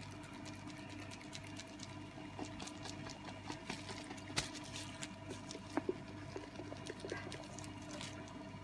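Instant coffee, sugar and a little water being shaken hard in a lidded glass jar: faint, rapid sloshing and clicking, with a few sharper knocks. The shaking dissolves the sugar and whips the coffee into a foam.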